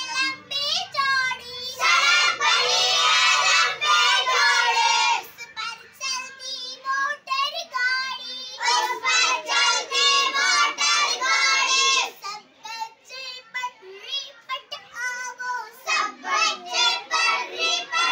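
A group of young children singing an action rhyme together in unison. Loud chorus lines alternate with quieter, sparser stretches.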